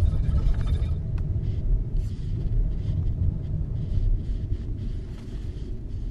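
Low engine and road rumble heard from inside a moving car's cabin, easing slightly toward the end as the car slows.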